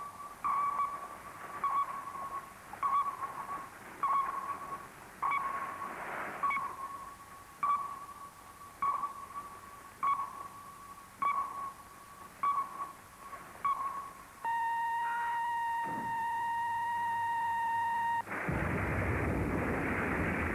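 ASDIC sonar pings: a short, clear ping repeating about every 1.2 seconds, followed about 14 seconds in by a steady held tone for some four seconds. Near the end a loud rushing roar breaks in, the sound of depth charges exploding in the sea.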